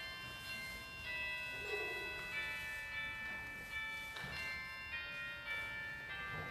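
Organ music playing slow, sustained chords that change every second or so, with a soft thump about four seconds in.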